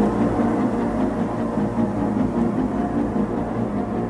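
Ambient music drone: a steady bed of sustained low tones with no beat. The preceding electronic track with a heavy beat cuts off right at the start.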